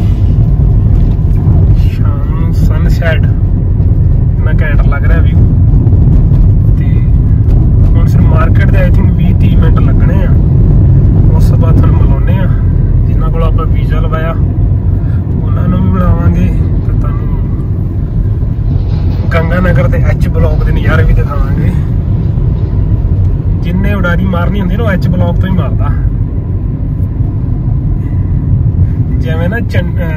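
Loud, steady low rumble of a car's engine and tyres on the road, heard from inside the moving car's cabin. A voice comes and goes over it every few seconds.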